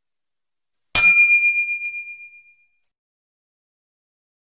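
A single bright ding, the notification-bell chime sound effect of a subscribe-button animation, struck about a second in and ringing out over about a second and a half.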